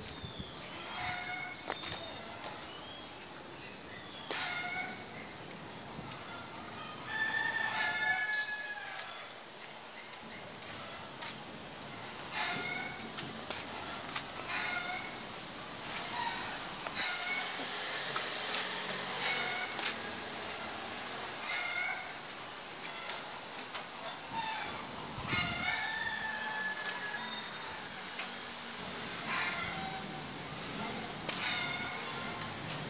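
Birds chirping in short high calls that recur every second or two over a faint background hum, with a soft rushing swell around the middle.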